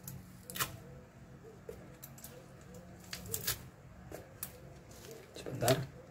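A powdered-drink sachet being opened by hand: a few sharp crinkles and rips of the packet, over a low steady hum.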